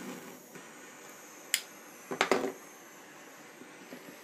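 Lighting a small butane hair torch with a lighter: one sharp click about one and a half seconds in, then a quick cluster of clicks and knocks just after two seconds as the torch and lighter are handled, with a faint steady hiss throughout.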